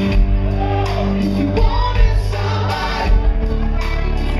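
A live rock band playing: a male lead singer sings a gliding vocal line over held chords, electric bass and guitar, with regular drum hits.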